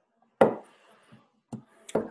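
A sharp knock about half a second in, dying away with a faint rustle, then two smaller clicks near the end: handling noise close to the microphone.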